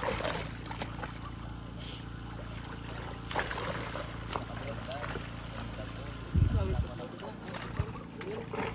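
Harvested milkfish thrashing and splashing in shallow water, in short irregular splashes, over a steady low motor hum. A heavy low thump about six and a half seconds in is the loudest sound.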